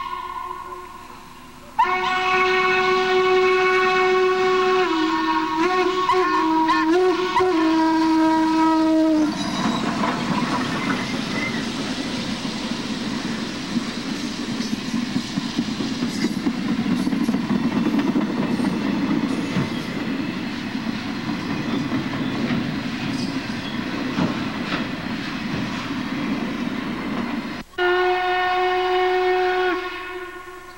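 Norfolk & Western 1218, a 2-6-6-4 articulated steam locomotive, blows its steam whistle: a brief toot, then a long blast of about seven seconds that steps down in pitch as it nears. Then the train rolls past with a steady rumble and clatter of wheels on the rails, and near the end another whistle blast starts abruptly.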